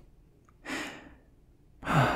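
A man breathing out: a soft breath a little over half a second in, then a louder sigh starting near the end.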